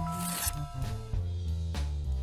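A brief paper-tearing sound effect in the first half second, over background music with drums.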